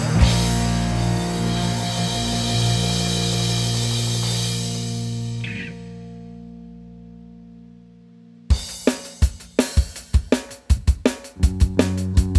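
A rock band's held final chord of electric guitars, bass and keyboard rings out and fades away over several seconds. About eight and a half seconds in, the drum kit starts a steady beat with kick, snare and hi-hat, and bass and guitar notes join in near the end.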